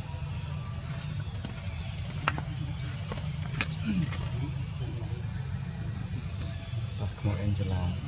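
Steady high-pitched insect chorus in forest, a constant two-toned drone, over a low rumble with a few faint clicks.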